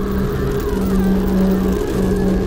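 A steady, low, rumbling drone from an animated horror short's soundtrack, with a hum that swells and breaks off about once a second and faint wavering tones above it.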